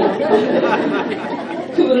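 Speech: a woman talking into a handheld microphone.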